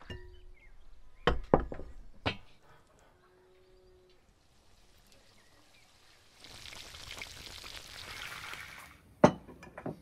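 Fish pieces sizzling in hot oil in a wide frying pan, a steady hiss for about three seconds in the second half. A few sharp knocks come earlier, and one loud knock follows the sizzle near the end.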